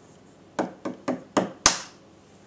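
An egg knocked five times against the countertop to crack its shell, a little over three knocks a second, the last knock the hardest.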